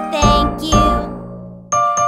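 Upbeat children's song music with bass notes and bell-like chime tones. It dies away about a second and a half in, then a new phrase starts sharply with a bright ding.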